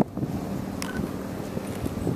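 Wind on the microphone: a steady low rumble, with a single faint click a little before one second in.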